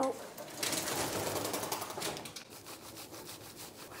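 Hands rubbing shampoo lather into a small dog's dense, wet coat: a quick run of wet, squishing scrubbing strokes.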